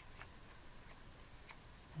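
Near silence with a few faint, sharp ticks of small paper pieces being handled.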